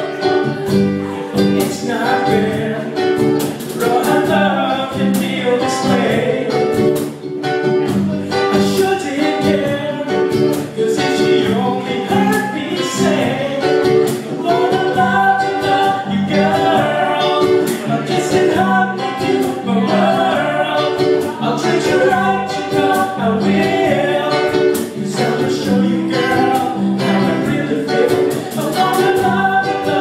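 Live acoustic band playing: strummed ukulele over a U-bass line and a cajon beat, with singing over it.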